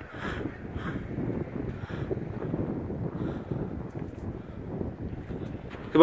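Wind buffeting the microphone: a steady low rumbling noise, with a few faint, indistinct sounds from further away.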